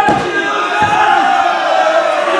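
Wrestling crowd yelling together, many voices at once, with a short low thud just under a second in.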